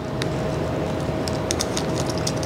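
Faint, scattered small clicks and ticks of a steel BOA lace cable being drawn out of the plastic dial housing by hand, over a steady low hum.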